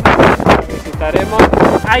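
Wind buffeting the microphone at an open window of a moving car, over a steady low rumble.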